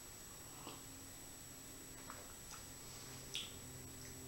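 Quiet room with a faint steady hum and a few faint short clicks of mouth sounds as a man drinks beer from a glass. The clearest click comes near the end.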